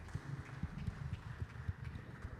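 Soft, irregular low knocks and bumps from an acoustic guitar being handled and settled on its strap between songs.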